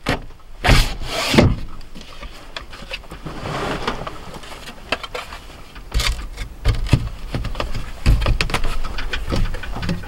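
A plywood window panel being pushed and worked into a trailer's sliding-window frame: irregular knocks and bumps of wood against the frame, with a stretch of scraping and rustling in the middle.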